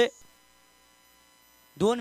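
A man's voice over a microphone breaks off just after the start, leaving about a second and a half of faint, steady electrical hum from the sound system, before speaking resumes near the end.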